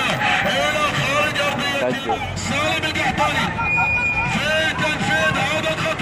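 Continuous human voice with gliding pitch and a few held notes, running without a break.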